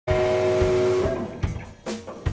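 Rock band playing in a small rehearsal room: a held electric guitar chord through an amp rings, then fades after about a second, with a few drum hits.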